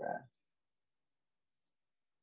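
The last word of a woman's spoken phrase ends about a third of a second in, then complete silence.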